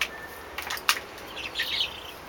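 Chickens making soft, brief chirping calls about halfway through, after a few short clicks.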